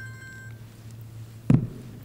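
An electronic phone tone, several steady pitches sounding together, that cuts off about half a second in, over a steady low electrical hum. A single sharp knock comes about three quarters of the way through.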